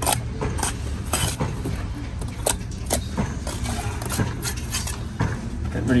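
Steel trowel scraping and clinking against mortar and a concrete block as a joint is buttered on, a string of short scrapes and clinks. A steady low rumble runs underneath.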